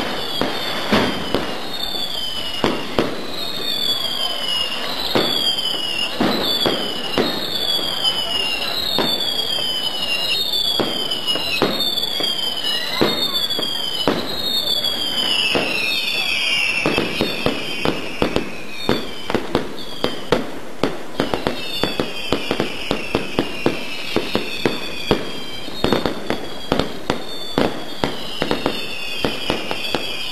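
Fireworks: a rapid series of whistling fireworks, each a falling whistle under a second long, over a dense crackle of firecracker bangs. The whistles come about one a second at first and crowd together, overlapping, in the second half.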